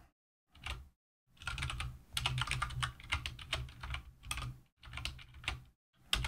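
Typing on a computer keyboard: a quick run of keystrokes, broken by a couple of brief pauses.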